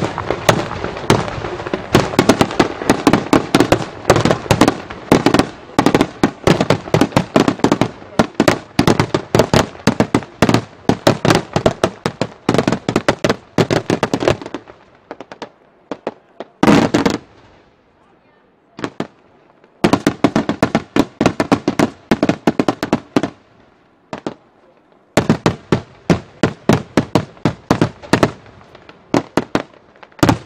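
Daytime fireworks: aerial shells bursting in rapid, dense volleys, many sharp bangs a second. About halfway through there is a lull of a few seconds, broken by a couple of single bursts. Then the volleys resume, with one more brief pause near the end.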